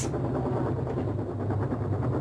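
A steady low rumble of a running engine or machine, without speech.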